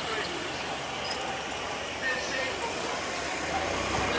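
Busy background noise with faint, indistinct voices, and a low rumble coming in near the end.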